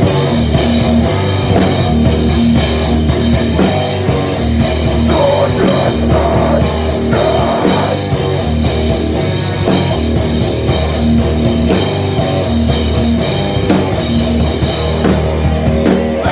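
Hardcore punk band playing live and loud: distorted electric guitar and a pounding drum kit, with the cymbals close up.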